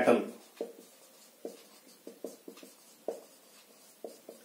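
Whiteboard marker writing on a whiteboard: about eight short pen strokes at irregular intervals as a line of words is written.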